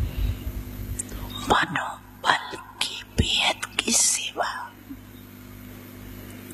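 Speech: a woman talking into a microphone in short phrases with pauses, over a steady low electrical hum.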